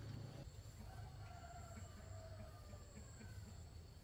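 Faint outdoor background: a low steady rumble and a thin, steady high whine, with a faint drawn-out pitched call between about one and two seconds in.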